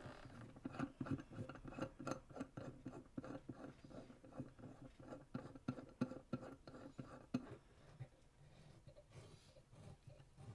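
Faint, uneven small clicks and scratches of a metal bridge clamp being fitted through a bridge pin hole and tightened down on a newly glued guitar bridge, several a second, thinning out with a short lull near the end.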